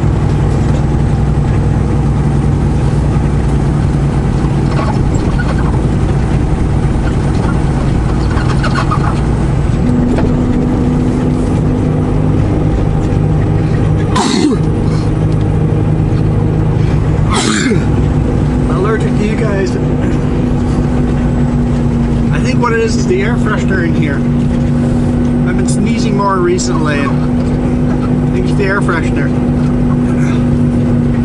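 Semi truck's diesel engine running under way, with steady engine drone and road noise. The engine note changes about ten seconds in and again a few seconds later, with two short knocks in between.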